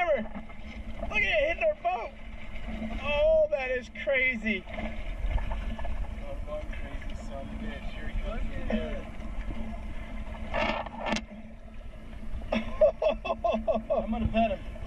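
Yamaha 200 outboard motor idling with a steady hum, over low water noise around the boat. There are two short sharp sounds about ten and a half seconds in, and voices early on and again near the end.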